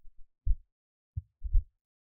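A few soft, low thumps, one about half a second in and two more close together past the middle.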